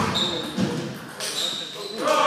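Celluloid table tennis ball struck by a bat and bouncing on the table, two sharp knocks in the first second as a rally ends, in a reverberant hall with voices.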